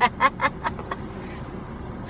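A woman laughing, a few short breathy laughs that fade out within the first second, over the steady low rumble of a car heard from inside the cabin.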